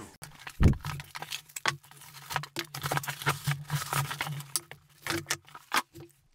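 Cardboard box being opened and its bubble-wrapped contents handled: a thump about half a second in, then a run of rustles, taps and clicks of packaging.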